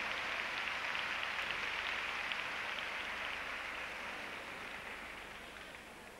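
Audience applauding, a dense patter of clapping that dies away gradually over the last few seconds.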